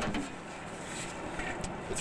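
Street traffic noise: a vehicle going by, a steady rushing sound with a few faint clicks in the second half.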